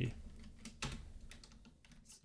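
Typing on a computer keyboard: a few scattered, fairly faint key clicks as text is entered.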